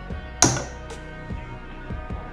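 Background music, with one sharp plastic click about half a second in and a few faint ticks after it: a plastic measuring spoon knocking as chocolate powder is scooped.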